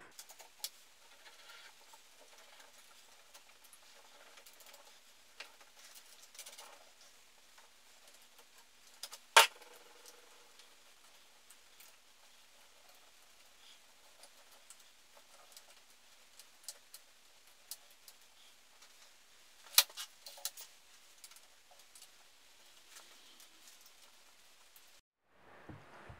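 Light handling noise from fitting motorcycle fork legs and clip-on handlebars into the yokes: faint scattered small clicks and taps, with two sharp clicks, one about nine seconds in and one about twenty seconds in.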